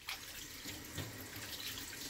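Kitchen tap water running steadily into a stainless-steel sink and over a wooden cutting board as it is rinsed. The flow starts just after the beginning.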